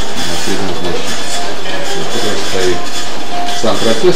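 Indistinct voices talking over a steady background rumble.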